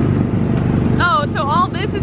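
Small gasoline engine of a Tomorrowland Speedway car running steadily while being driven. A person's voice calls out about halfway through.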